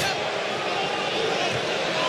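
Steady background noise of a football stadium crowd, an even wash with no distinct cheer or chant.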